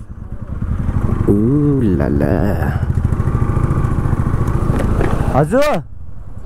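Motorcycle engine running under the rider, building over the first second and then pulling steadily. A voice calls out briefly twice over it, once early and once near the end, each call rising and falling in pitch.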